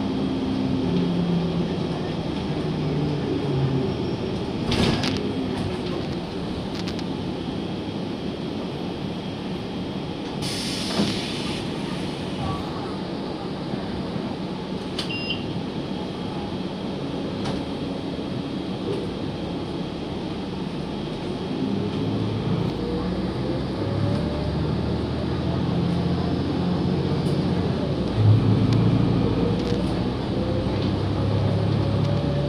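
A 2018 Gillig city bus under way, heard from inside the cabin: steady engine and road noise, with a short burst of hiss about ten seconds in. Near the end a low drivetrain tone rises slowly in pitch as the bus speeds up.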